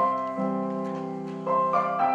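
Piano chords played on a digital stage piano. One chord is struck at the start and left to ring and fade, then a new chord comes in about one and a half seconds in.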